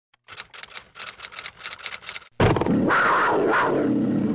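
Intro logo sound effect: a quick, uneven run of ticking clicks for about two seconds, then a sudden loud hit that carries on as a sustained, rumbling swell with sweeping tones.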